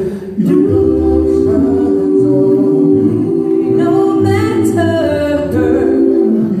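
A small mixed gospel vocal ensemble of women's and men's voices singing a cappella in close harmony, holding long sustained chords, with a brief breath-break just after the start.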